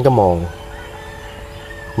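A rooster crowing faintly: one long, thin call starting about a second in, under a man's brief speech at the start.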